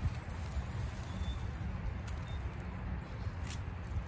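Outdoor ambience with a steady low rumble of wind on the microphone and soft rustling of soil and dry leaves as daikon radishes are pulled by hand. Two faint high chirps come in the middle, and a sharp click about three and a half seconds in.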